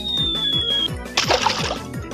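Cartoon sound effects over background music with a steady beat: a thin falling whistle that ends about a second in, then a short splash as a golf ball drops into a glass of drink.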